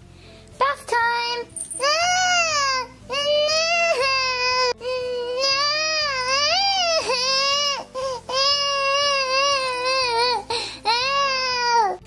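Toddler crying in protest at bath time: a run of long, wavering wails, each about a second long, with short catches of breath between them.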